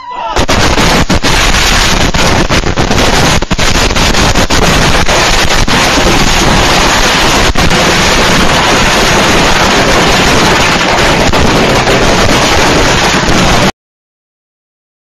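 A barrage of consumer firework explosions going off out of control at ground level close to the camera, heard through a security camera's microphone. The bangs come so thick and loud that they merge into one continuous, overloaded din before cutting off abruptly near the end.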